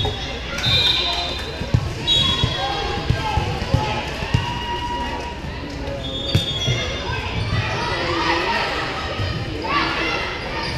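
A volleyball being bounced and struck on a hardwood gym floor: a handful of sharp smacks over the first six or so seconds, the last one as the ball is served. Short high squeaks and a steady murmur of players' and spectators' voices fill the hall around them.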